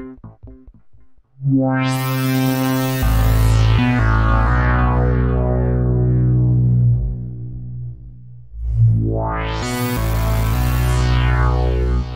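Crisalys software synthesizer playing: a short run of repeated notes fades out, then a sustained low chord enters and its filter sweeps open to a bright peak and slowly closes as the bass note shifts. A second held note sweeps open and closed the same way about eight and a half seconds in.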